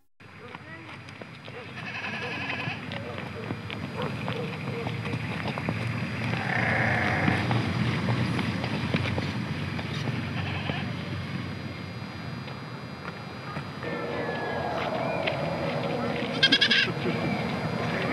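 Outdoor camp ambience: goats bleating now and then, several calls a few seconds apart, with distant voices over a steady low background noise.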